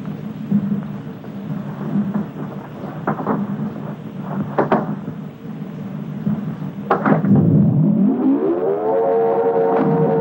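A low rumble broken by a few sharp knocks, then about seven seconds in a motor-driven alarm siren winds up, rising steeply in pitch and settling into a loud steady tone.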